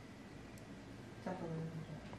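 Faint room tone, then about a second and a quarter in a person gives a short, soft closed-mouth "mm".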